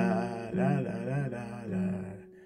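Male voice singing a wordless 'na-na-na' melody in short syllables, with a ukulele accompanying.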